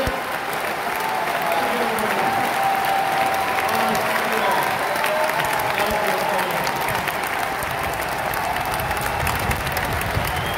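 Large audience applauding: a steady wash of clapping with voices mixed in.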